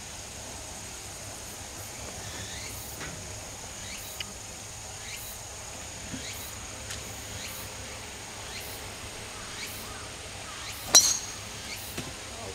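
A golf driver striking a teed ball once, a single sharp crack about eleven seconds in, over a steady outdoor background with faint chirps.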